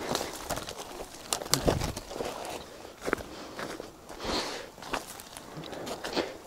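Footsteps through dry fallen leaves and brush, with irregular crackles and clicks of twigs and branches.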